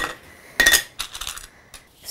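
Small objects handled on a desk: a few short knocks and clinks, the loudest about half a second in, followed by lighter ticks.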